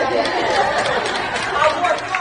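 An audience answering together with overlapping voices, and a few scattered hand claps that grow more frequent toward the end.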